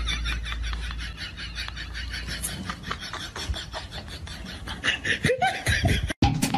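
A person laughing: a long run of quick, breathy laughs, breaking into a louder voiced laugh near the end.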